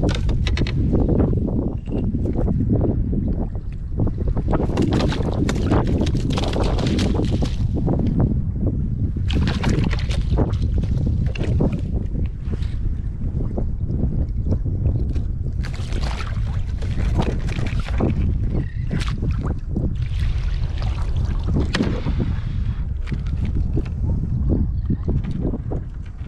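Strong wind buffeting the microphone aboard a fishing kayak, a steady low rumble throughout, with irregular clicks and rustles from a landing net, rod and fish being handled.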